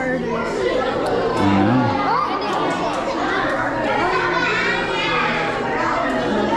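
Several people's voices chattering and overlapping in a large indoor hall, with no single clear voice standing out.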